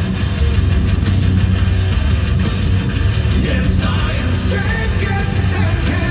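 Live heavy metal band playing loud: distorted electric guitars over bass and drums, with little or no singing.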